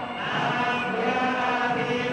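Group of male voices chanting Vedic mantras together in long, held tones.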